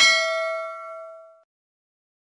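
Bell-like ding sound effect of a notification-bell button, ringing with several tones and fading out over about a second and a half.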